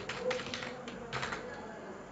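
Typing on a computer keyboard: a handful of key clicks, some coming in quick runs.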